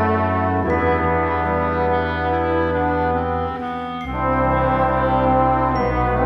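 A brass-led wind ensemble of bugles, horn, trombone and tuba with clarinet and flute playing sustained chords over a tuba bass line. The harmony shifts about two-thirds of a second in and again about four seconds in.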